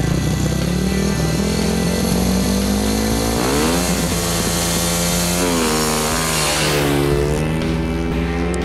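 500cc single-cylinder speedway motorcycle engine revving, rising in pitch twice, about three and five-and-a-half seconds in, over background music.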